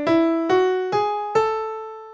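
The top of an ascending A melodic minor scale played on a piano-like keyboard, one note at a time: E, F-sharp, G-sharp and the high A, about two notes a second. The raised sixth and seventh degrees lead up to the tonic, and the final A rings and fades.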